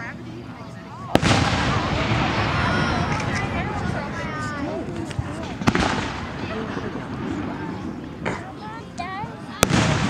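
Aerial firework shells bursting: three sharp bangs, about a second in, just past the middle and just before the end, the first followed by a long loud noisy wash.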